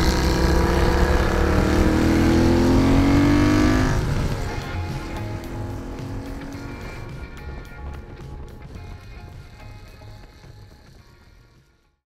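Honda CX650 cafe racer's V-twin with Peashooter exhausts, pitch rising as it accelerates for about four seconds, then dropping as the throttle comes off. Music runs underneath, and everything fades out to silence near the end.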